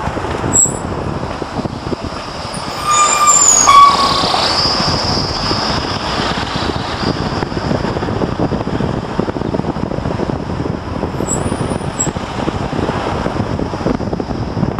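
Steady road and engine noise heard from inside a moving vehicle on a rough mountain road, with wind on the microphone. A brief squeal about three seconds in is the loudest moment.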